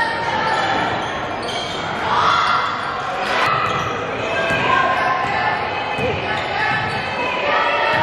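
Basketball dribbled on a hardwood gym floor, under the voices of players and spectators filling a large gym throughout.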